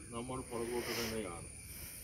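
A man speaking into a microphone for about a second, then pausing, over a faint steady high hiss.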